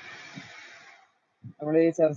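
Steady hiss over a voice-chat line, cutting to dead silence about a second in; then a man starts speaking.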